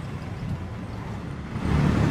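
Street ambience with a motor vehicle running, a low rumble under steady traffic noise that grows louder near the end.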